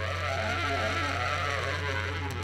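Baritone saxophone holding one low, steady note, with wavering higher overtones above it.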